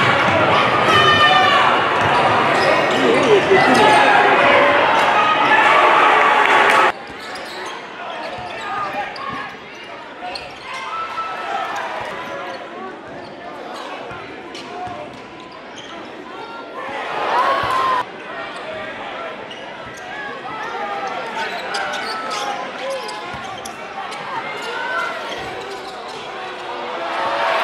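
Game sound in a basketball gym: a basketball bouncing on the hardwood floor, with short clicks of play, crowd noise and voices echoing in the hall. A louder stretch cuts off abruptly about seven seconds in, and a brief loud burst ends just as sharply near eighteen seconds.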